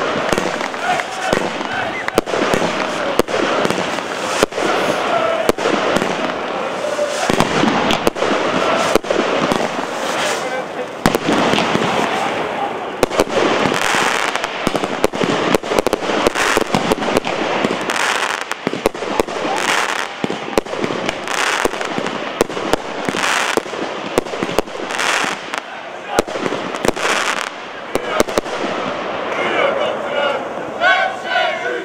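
Fireworks going off in many sharp, irregular bangs with crackling, over the voices of a crowd.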